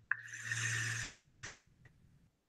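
A long draw on a vape: about a second of airflow hiss with a steady whistle through the device, followed by a short breath of exhale.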